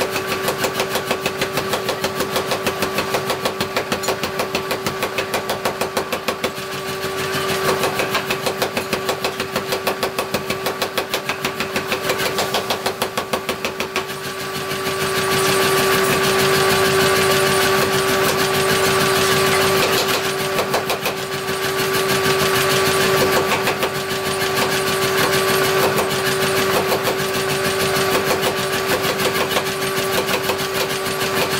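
A 75 kg belt-driven power hammer pounding red-hot steel in rapid, even blows over a steady hum, easing off briefly a couple of times.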